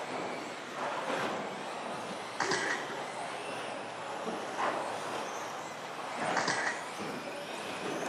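Electric 2WD stock-class RC buggies with 17.5-turn brushless motors running laps on an indoor turf track. Their motors and tyres make a steady wash of noise that swells briefly four times as cars come past close by.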